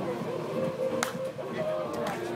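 A softball bat hitting a pitched ball once, a single sharp crack about a second in, over background music and crowd chatter.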